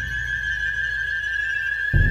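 Suspense film score: a steady high-pitched whine held over a fading low rumble, with a new low booming hit near the end.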